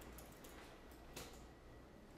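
Near silence: faint room tone with a few faint ticks of a pen on paper under a document camera, the clearest about a second in.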